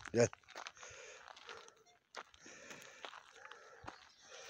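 After a short call of "gel", faint crunching footsteps on a gravel dirt track, with a few small clicks.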